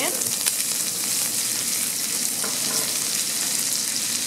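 Chopped garlic and onion sizzling in hot oil and butter in a stainless-steel skillet, stirred with a silicone spatula. A steady hiss with a few sharp ticks as they go into the pan.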